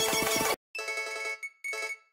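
MuseScore's built-in piano sound playing a short passage of the score, which stops about half a second in. Two single C#5 notes follow, the program sounding each note as it is entered: the first lasts under a second, the second is brief.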